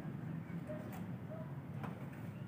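Low steady background hum with a faint tap near the end as cardboard tree cutouts are pushed over by hand, and a couple of faint short high notes.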